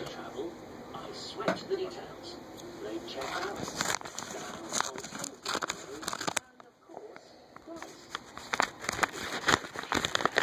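Paper mailer envelope being handled and torn open: irregular crackling and crinkling with small knocks and rustles from the camera being handled, and a brief lull about two-thirds of the way through.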